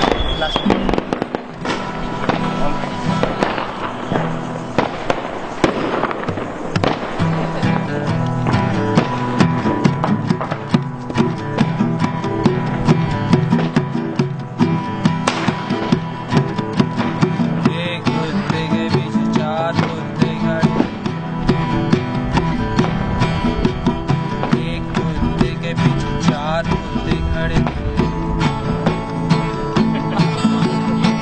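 Two acoustic guitars strumming chords with hand percussion keeping time. Diwali firecrackers crack and bang in the background, thickest in the first several seconds.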